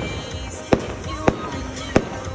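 Aerial firework shells bursting overhead: three sharp bangs, a little over half a second apart, in the second half, over music playing.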